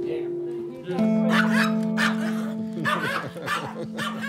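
A small dog yapping in a run of short barks, starting about a second in, over background music with long held guitar notes.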